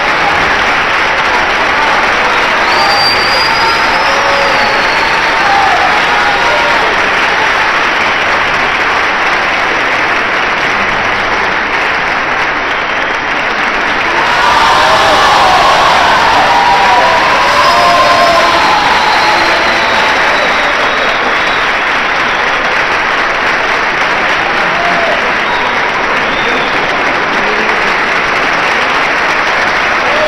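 Concert hall audience applauding continuously. The clapping swells about halfway through, with voices calling out over it, and a short high whistle sounds a few seconds in.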